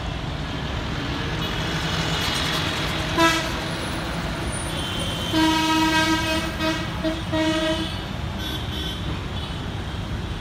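Road traffic passing at night, with a steady rumble of engines and tyres. A vehicle horn toots briefly about three seconds in, then a run of horn beeps sounds between about five and eight seconds.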